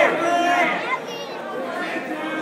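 Crowd of spectators talking and calling out in a gym, with one loud voice at the start and general chatter after it.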